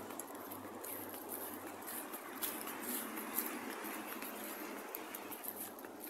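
Steady hiss of motorway traffic, with faint rustling of footsteps through grass and brush.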